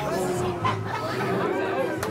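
Bystanders talking among themselves over background music with steady low notes.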